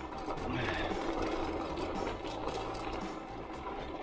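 Bicycle rolling along a gravel trail: the steady noise of the tyres on loose gravel.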